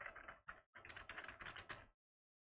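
Computer keyboard typing: a quick, faint run of keystrokes, several a second, with a brief pause about two-thirds of a second in.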